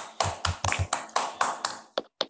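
One person clapping hands in a quick steady rhythm, about five or six claps a second, heard over a video call; the clapping stops just before the end.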